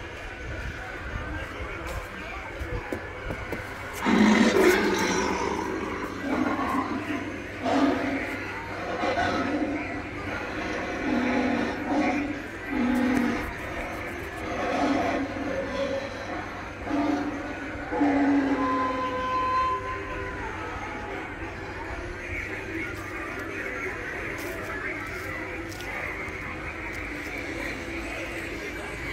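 Recorded voice-like sound effects from animated Halloween props. A run of short, pitched calls begins about four seconds in and lasts about fifteen seconds, with one held tone near the end. A steady background noise follows.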